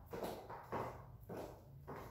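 Footsteps of stiletto heels on a tile floor, about four steps at an even walking pace.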